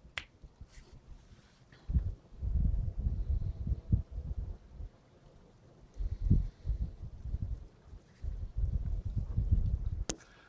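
Low, uneven rumble of buffeting on a phone microphone, in two spells of about three seconds each, from wind or from the phone being handled at an open door in deep snow.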